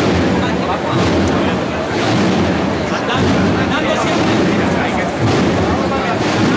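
Street crowd chatter from many voices over a steady low rumble.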